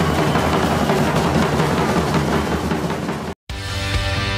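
Hundreds of snare and bass drums played together in a dense, continuous roll: massed drummers in a record drum crescendo. About three and a half seconds in it cuts off abruptly, and after a split-second gap a different piece of music with sustained tones begins.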